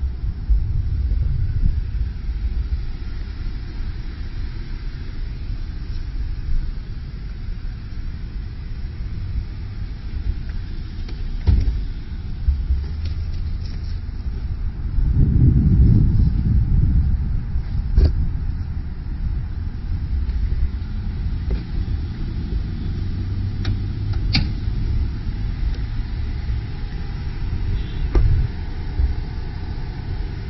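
Uneven low rumble of wind and handling noise on a handheld camera's microphone outdoors, swelling for a couple of seconds around the middle, with a few sharp clicks scattered through.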